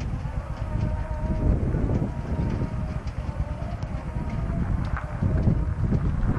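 Wind buffeting the microphone, with horses' hooves on a gravel track beneath it and faint steady calls in the first couple of seconds.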